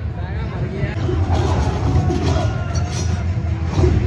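Action film soundtrack playing over cinema speakers and picked up from the audience: a heavy, steady low rumble with voices over it.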